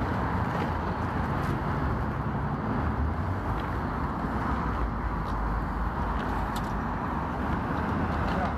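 Steady city street traffic noise with a deep rumble, picked up by a phone's built-in microphones, with a few faint clicks through it.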